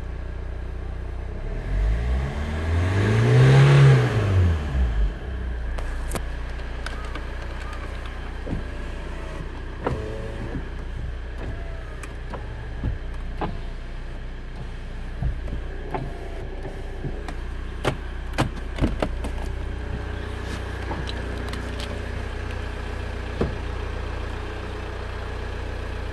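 Hyundai Santa Fe engine idling steadily, heard from inside the cabin. About two seconds in it is revved once: the pitch climbs and falls back to idle over about three seconds. Scattered light clicks follow.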